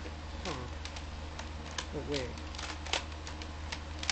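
Scattered small plastic clicks and knocks from a toy foam-dart shotgun blaster being handled and worked, as someone tries to figure out how to cock it. A few quiet spoken words come in between the clicks.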